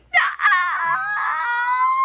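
A teenage girl's high-pitched squeal of joy, starting with a quick excited cry and then held on one steady high note.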